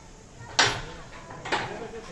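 A large metal cooking pot clanking as it is hauled up by its handle: a sharp knock just after half a second in, then a second one about a second later.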